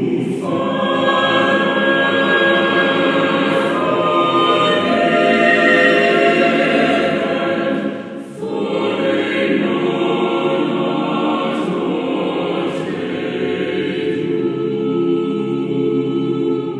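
Mixed four-part choir (sopranos, altos, tenors, basses) singing the sacred text "Father, forgive them, for they know not what they do" in sustained, smooth phrases. There is a short break between phrases about halfway through, then the choir comes back in.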